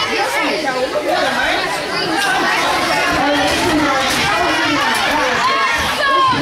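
A crowd of spectators chattering and calling out at once, many voices overlapping with no single clear speaker.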